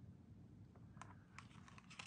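Near silence with a few faint light clicks from about a second in: a metal-tipped tool tapping and scraping against a small plastic cup while drops of orange pigment are mixed into white resin.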